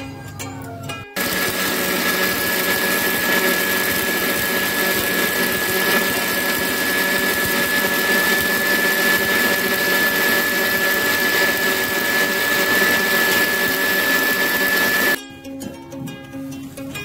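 Countertop blender running at one steady speed, blending passion fruit pulp and seeds with liquid, with a constant high whine over the motor noise. It starts abruptly about a second in and cuts off about a second before the end.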